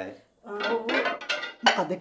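Plates clinking as they are picked up and handled at a kitchen sink, with one sharp clink about one and a half seconds in.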